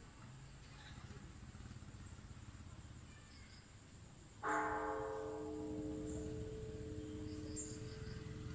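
Buddhist pagoda's bronze bell struck once about four and a half seconds in, then ringing on with a long, slowly fading hum; the higher tones die away within about a second while the low ones carry on and waver.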